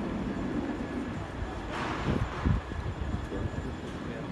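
City street ambience: a steady low traffic rumble, with a brief hiss about two seconds in and a few low bumps just after.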